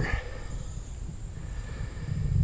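Outdoor background: faint, steady insect chirring, typical of crickets, over a low rumble.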